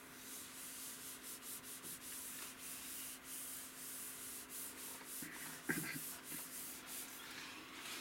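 A palm rubbing back and forth across a computer monitor screen in repeated quick strokes of skin brushing on glass, with a small knock a little past halfway.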